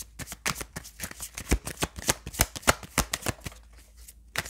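Tarot cards being shuffled by hand: a quick, irregular run of card slaps and flicks, several a second.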